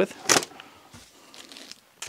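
Faint rustling and light clicks of small plastic-bagged accessories being handled and put aside, with a short sharp rustle just after the start.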